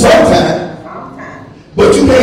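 A man's loud preaching voice through a microphone. A long, raised phrase drops away about half a second in, and another loud phrase starts near the end.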